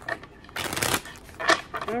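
A tarot deck being shuffled by hand: a brief flurry of card clicks about half a second in, then a single sharp click about a second later.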